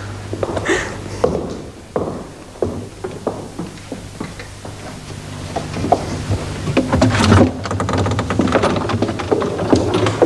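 Footsteps and irregular knocks of people moving through a room, with a panelled wooden door being opened near the end, over a low steady hum.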